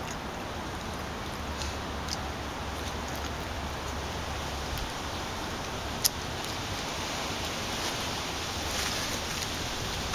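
Steady hiss of background noise with a few faint clicks and one sharper click about six seconds in.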